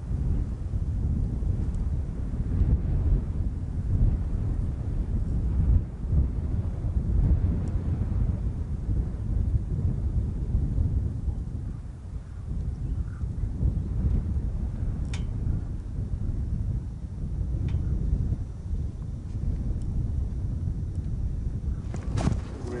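Wind buffeting the microphone: a continuous low rumble that surges and eases in gusts.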